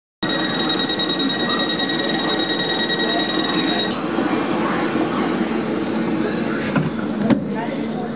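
Class 455 electric train's warning tone sounding steadily for about four seconds, then cutting off with a click; the train moves off, and a steady whine from its new AC traction equipment comes in past the halfway point, with a couple of sharp knocks near the end.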